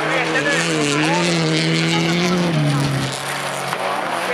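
Folkrace cars racing through a dirt-track corner, engines held at high revs; the loudest engine note drops in pitch about two and a half seconds in as the driver lifts off.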